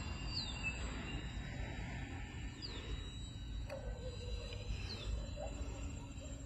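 Steady low rumble of wind on the microphone, with a bird's short, high, downward-sliding call repeating three times, about every two seconds.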